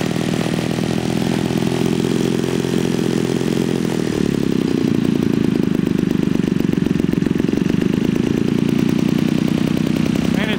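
US41CC single-cylinder two-stroke gasoline model-airplane engine running steadily on a test stand, fitted with twin J-Tec canister mufflers and turning a 20x12 Master Airscrew propeller. Its note shifts slightly about four seconds in.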